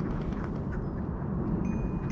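Steady low rumble of wind on the microphone in open air, with a faint thin high tone near the end.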